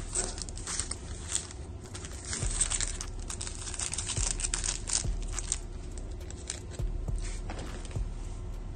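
Foil wrappers of a stack of sealed Topps Chrome Update trading-card packs crinkling and rustling as the packs are shuffled by hand, in a quick run of small crackles.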